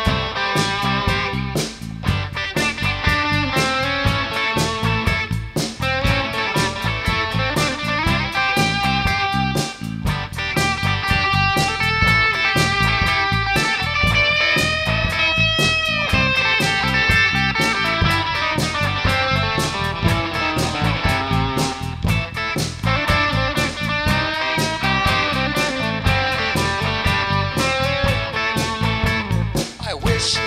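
Rock instrumental break: a Stratocaster-style electric guitar playing a solo over steady drums and bass. About halfway through, a long note is bent up and let back down.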